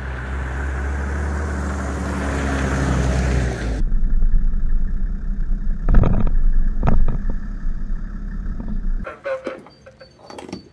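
A 1991 Mercedes G-Wagon with a swapped OM606 straight-six turbodiesel drives past on paving stones, the engine and tyre noise rising, until it cuts off suddenly. It then runs at low speed with a steady low rumble and two sharp knocks, stopping about a second before the end, where a few clicks of fuel-nozzle handling and a short beep follow.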